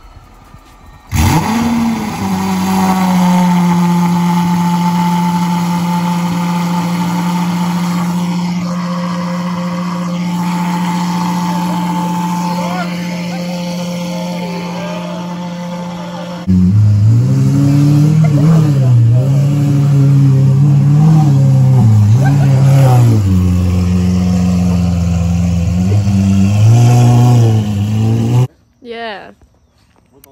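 Lamborghini Aventador Ultimae's naturally aspirated V12 through a Gintani exhaust, starting with a sudden loud burst about a second in and settling into a steady, very loud high idle. About halfway through it gets louder still, its pitch rising and falling in repeated revs, then it cuts off abruptly near the end.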